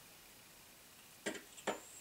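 Near silence: room tone, broken by two brief soft clicks about a second and a half in.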